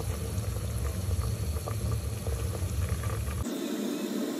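A pot of haleem ingredients simmering and bubbling steadily in an open pressure cooker, with a few faint ticks. A low rumble under it cuts off abruptly just before the end.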